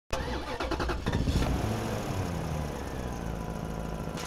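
An engine starting: uneven strokes for about the first second and a half as it catches, then running steadily with a low hum.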